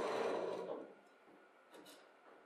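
Glass plate set down and slid across a wooden tabletop: a sudden scraping rub that fades out within about a second, followed near the end by a couple of faint light taps.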